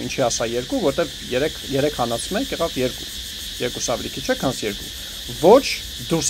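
A steady, high insect chorus, like crickets, runs throughout. A man's voice speaks over it in short phrases, with a brief pause near the middle.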